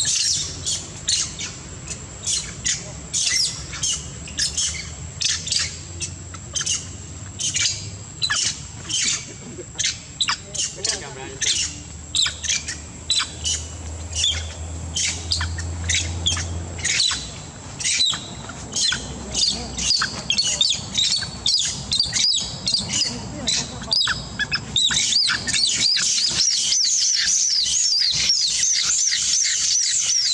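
Monkeys screaming in short, high calls repeated two or three times a second over a steady high whine; in the last five seconds the calls run together into a dense, wavering squealing.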